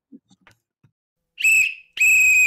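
A whistle blown: after a near-silent gap, one short, shrill, steady blast about a second and a half in, with a second blast starting at the very end.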